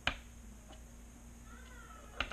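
A single sharp click of steel tweezers against the micro drone's wiring at the start, as a fresh solder joint is tugged to test it. Then quiet room noise, with a faint short squeak that rises and falls near the end.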